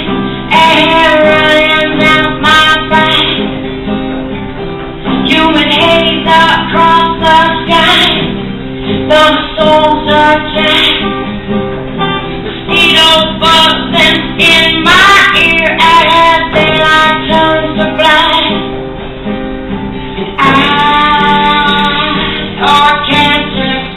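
A woman singing with her own acoustic guitar accompaniment, a live solo song in sung phrases with short gaps between them.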